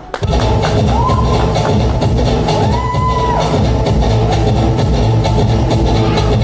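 Loud dance music with a heavy bass beat, cutting in abruptly right at the start after a brief quieter moment.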